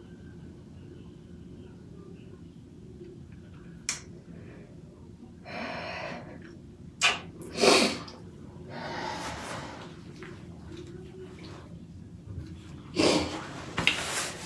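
A woman breathing out heavily in several short, breathy blasts, like sighs or snorts, the loudest a little before halfway. There is a sharp click about four seconds in, and louder rustling movement near the end.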